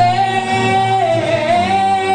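A woman singing into a handheld microphone over musical accompaniment, holding one long note that dips briefly in pitch about halfway through and then returns.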